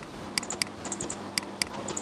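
Computer mouse clicking and scrolling while browsing files: a handful of short, sharp clicks at irregular intervals, some in close pairs.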